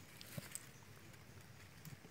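Near silence, broken by two faint short clicks about half a second in and another just before the end.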